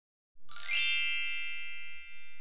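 A bright, shimmering chime that strikes about half a second in, with a sparkle of high tones, then rings on and slowly fades.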